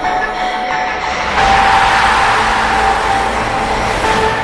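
Electronic ident music for a TV news sports segment, with a loud rushing whoosh that swells in about a second in.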